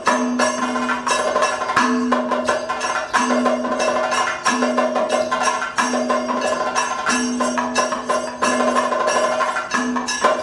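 Kathakali percussion accompaniment: rapid drum strokes over a ringing metal gong struck about every second and a quarter, keeping time for the dance.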